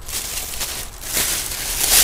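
Thin plastic carrier bag rustling as records are put back into it, louder from about a second in.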